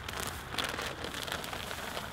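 A foil coffee-grounds bag crinkling as it is handled and tipped out, with damp coffee grounds falling onto a pile of dry leaves in the compost bin: a faint, even rustle made of many tiny ticks.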